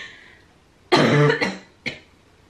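A woman's cough, from a sinus infection and the start of an upper respiratory infection. One loud cough about a second in, then a short second one near the end.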